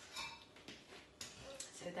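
A few faint clicks and taps of serving utensils against a ceramic baking dish as food is lifted out, under soft, murmured speech.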